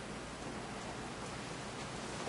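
Steady, even background hiss of room noise, with no distinct events.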